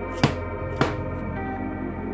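Two sharp mallet blows on a pronged stitching chisel, punching stitching holes through leather, about half a second apart, the first the louder. Steady ambient background music plays underneath.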